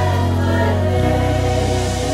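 Live gospel worship music: a choir and congregation singing a long held chord over keyboards and bass, with the harmony shifting to a new chord about a second in.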